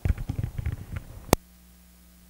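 Handheld microphone being handled as it is passed from one person's hand to another's: a run of irregular low bumps and rubs, ending about a second and a half in with one sharp click, after which only a faint steady hum is left.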